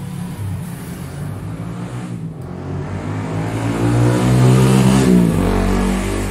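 A passing motor vehicle's engine, growing louder and rising in pitch, then dropping in pitch about five seconds in as it goes by.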